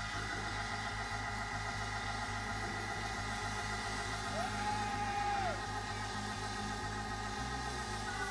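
Live church band music: sustained organ chords over a steady low beat, with a short sliding note about halfway through.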